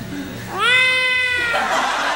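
A single cat meow about half a second in, rising in pitch and then held for about a second, followed by a wash of noise.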